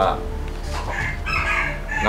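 A rooster crowing, a long pitched call about halfway through.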